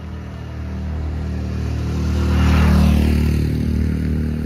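Motor vehicle engine running, growing steadily louder to a peak near three seconds with a hiss of noise at its loudest, then easing slightly.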